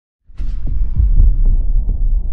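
Cinematic title-intro sound effect: a sudden hit with a brief hiss about a third of a second in, then a loud, deep rumble that throbs in repeated pulses.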